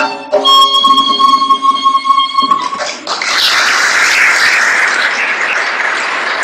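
Ney (Persian end-blown reed flute) holding a long final note over a tombak stroke, ending the Chahargah piece about two and a half seconds in. From about three seconds in, steady applause.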